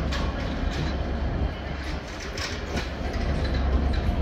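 Class 69 diesel-electric locomotive (69005) with its EMD 12-710 engine running as it approaches at the head of a freight, a deep rumble that grows louder towards the end, with faint clicks from the wheels on the rails.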